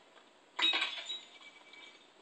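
A glass bong is thrown and smashes: one sharp crash about half a second in, then a fading tinkle of ringing glass pieces. Heard through a television speaker.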